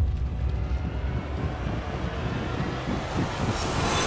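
Trailer sound design: a loud low rumble that starts suddenly and builds, with a rising hiss near the end, then cuts off abruptly.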